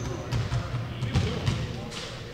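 Basketballs bouncing on a hardwood court in the background, a few dull thumps at irregular intervals, over a steady low room hum.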